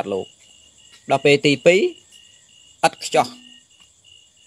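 A man preaching in Khmer in three short phrases with pauses between them, over a steady, pulsing chirping of crickets in the background.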